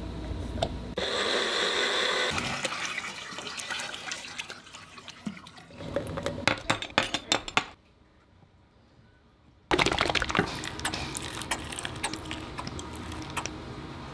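Water pouring and the Pangea gecko diet being mixed in a clear cup, with a whine for a second or so near the start. This is followed by a run of clinks as small stainless steel bowls are set down on a wooden table, a brief hush, then the mix being squirted from a squeeze bottle into the dishes.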